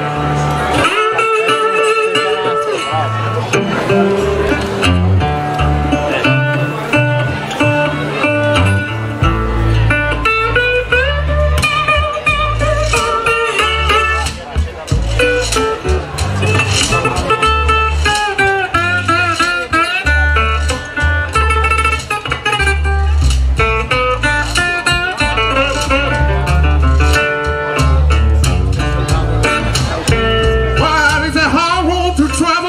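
Blues band playing an instrumental passage live: a strummed and picked acoustic guitar, washboard scraping, and bending high notes of a harmonica played into a microphone. An upright double bass comes in with strong low notes about nine seconds in.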